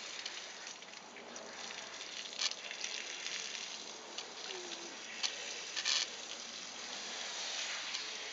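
Garden hose spray nozzle spraying water onto a wet dog's coat to rinse it, a steady hiss of water with a few brief louder spatters.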